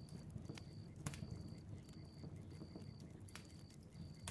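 Faint campfire crackling: irregular small pops and snaps over a low rumble, with a faint high tone pulsing in short, evenly spaced dashes behind it.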